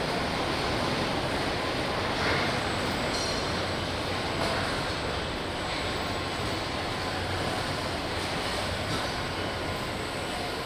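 Car assembly line ambience: a steady mechanical rumble and low hum from the production-line machinery and industrial robots, with a few short, slightly louder machine sounds in the first half.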